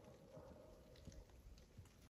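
Near silence, with only a faint low rumble and a few weak ticks.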